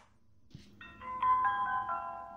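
A cheap camcorder playing its built-in electronic shutdown jingle as it switches off with a flat battery: a short chime of several stepped notes starting about a second in, like the sound of an elevator closing.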